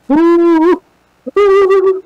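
A woman's voice giving two loud, long held calls, each steady in pitch, the second starting a little over a second in.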